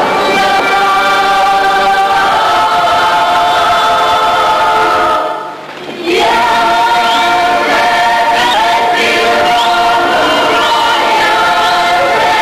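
Mixed men's and women's choir singing a Ukrainian folk song in long held chords, breaking off briefly about halfway and then coming back in full.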